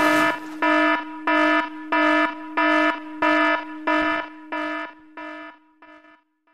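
Alarm sound effect: a repeated electronic warning beep, about three beeps every two seconds, that fades out over the last couple of seconds.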